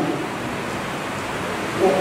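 Steady hiss of room and recording noise through a brief pause in a man's speech; his voice comes back with a short word near the end.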